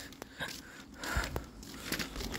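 A folding metal hand truck being handled: a few light clicks and a soft low thump about a second in.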